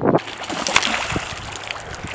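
A skipped stone touching down on lake water, a couple of small splashes about a second in, over a steady hiss of wind and rippling water.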